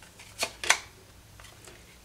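Tarot cards sliding off the deck as one is drawn: two quick papery snaps about half a second in, a quarter second apart.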